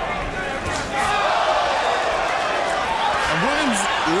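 Steady arena crowd noise at a boxing match, with a couple of short sharp smacks about a second in and a man's voice starting near the end.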